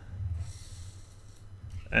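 A low steady hum with faint hiss of room noise, with no distinct clicks or motor sounds.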